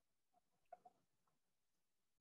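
Near silence: room tone over a video call, with a few faint short ticks just under a second in.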